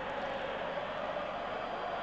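Steady stadium crowd noise, even and unchanging, with the hiss of an old television broadcast recording.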